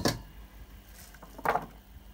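Stainless steel kitchenware being handled: one short metallic clank about a second and a half in, with faint room tone around it.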